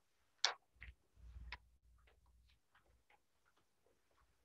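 Faint paper handling: a sharp rustle about half a second in, two softer ones after it, then scattered soft clicks and taps at no steady rhythm.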